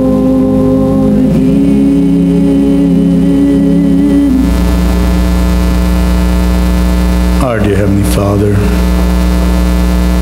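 Soft sustained keyboard chords held under a prayer, each chord steady for a few seconds before changing to the next. A voice is heard briefly about three-quarters of the way through.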